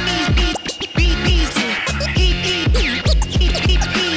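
DJ scratching a record on a turntable, the pitch sweeping up and down, over a beat with a steady kick drum.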